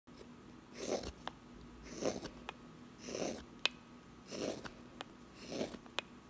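Straight carving knife shaving a green alder spoon blank: five even slicing strokes a little over a second apart, each a soft scrape, with faint ticks between them.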